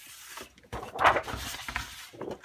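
Sheets of 12 x 12 scrapbook paper being pulled and slid over one another on a cutting mat: a rustling slide that gets louder about a second in.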